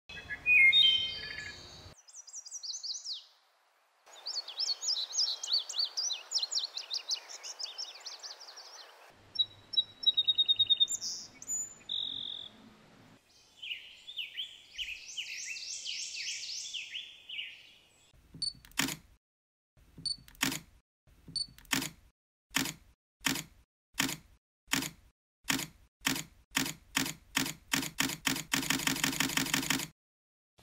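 Songs of several different wild birds in short pieces that cut off abruptly one after another. About two-thirds of the way in, a run of sharp clicks begins, speeding up steadily until they blur into one another near the end.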